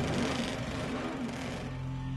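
Racing motorcycle engine running at high revs as it passes, dying away about a second and a half in, over steady background music.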